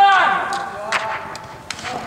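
A man's shout in an echoing indoor sports dome, trailing off in the first half second, then a few sharp knocks about a second in and near the end.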